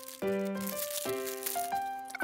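Soft background music of held notes that change every half second or so, with a light rattle over it, in keeping with plastic toy track pieces being pulled from their package.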